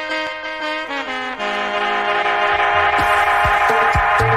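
Roots reggae record: a horn section plays a slow line of held notes, stepping to new notes about one second in and again a little later. In the second half drum hits and a deep bass come in under the horns.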